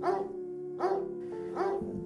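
A dog barks twice over background music that holds a steady note.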